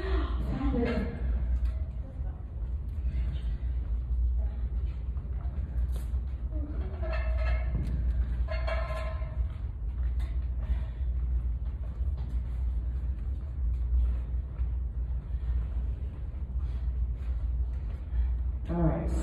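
Steady low rumble of a large room, with people talking at a distance in a few short stretches and a few faint knocks.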